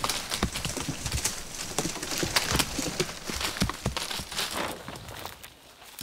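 Korean pine cones shaken loose from the top of a tall Korean pine, falling and striking the ground and branches in a rapid, irregular string of knocks and thuds that thins out near the end.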